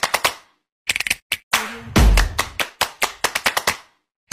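Intro music made of a fast run of sharp percussive hits, like a rattling drum roll, with a deep bass boom about two seconds in. It breaks off for a moment just under a second in and stops just before the end.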